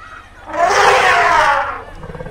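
A Sumatran elephant trumpeting once: a loud, harsh blare lasting just over a second, starting about half a second in.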